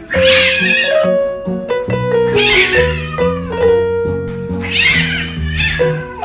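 A cat yowling three times, each a rough cry lasting under a second, over background music.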